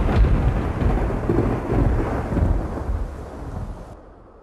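A thunderclap: a sharp crack at the start, then a deep rumble over a steady hiss that fades and cuts off just before the end.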